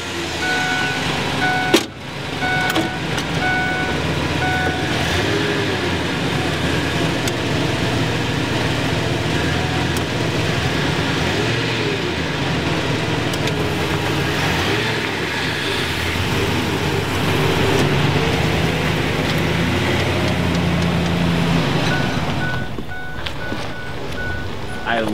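Ford E-Series van engine running steadily while a door-open warning chime dings in the first few seconds and again near the end, with a sharp click about two seconds in. The van will not drive: its transmission is broken, the driver thinks.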